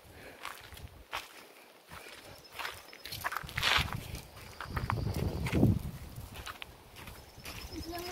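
Footsteps crunching on a gravel road, irregular steps with a few louder scuffs.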